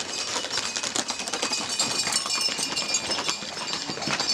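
Horses' hooves clattering on the asphalt street in a fast, dense run of hoofbeats as riders gallop past with the bulls.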